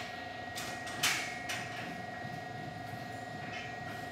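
Steel barbell knocking against the power rack's metal pins and uprights as it is set into place: one loud clank about a second in and a few lighter knocks, over a steady faint hum.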